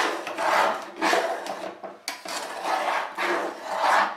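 Metal spatula scraping the bottom of a stainless-steel saucepan full of foaming cleaning liquid, in repeated rasping strokes roughly once a second. It is working loose burnt-on residue from the pan.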